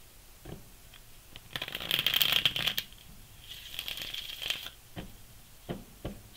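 A tarot deck being shuffled by hand: two bouts of dense, crackly card riffling, the first louder and the second shorter and softer, as cards are mixed before clarifier cards are drawn.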